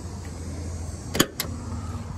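Driver's door of a 1995 Ford Bronco being unlatched and pulled open: a sharp click from the latch about a second in, then a second, weaker click, over a steady low rumble.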